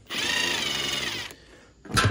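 Cordless drill spinning a long extension bit against a screw for just over a second. Its motor gives a steady high whine that dips slightly in pitch midway, then stops.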